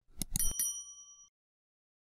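Subscribe-button animation sound effect: a few quick clicks, then a single bright bell ding that rings for about a second and dies away.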